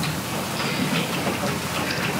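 Steady hiss and room noise from a courtroom microphone feed, with faint, indistinct voices in the background.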